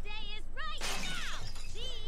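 Audio from an animated cartoon episode: a high, animated character voice with its pitch swooping up and down. A short noisy sound effect comes in about a second in.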